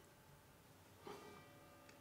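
Near silence: room tone, with a faint soft rustle about a second in.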